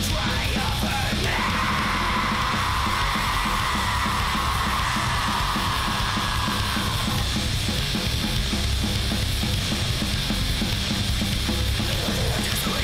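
Hardcore crust punk music: loud, dense distorted guitars, bass and drums throughout, with a brighter, harsher layer on top from about one second in until about seven seconds in.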